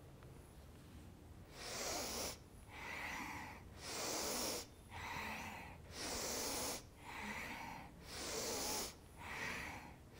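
A woman's paced, audible yoga breathing: inhaling as she leans back and exhaling as she folds forward over her legs, about one breath a second. It begins about a second and a half in.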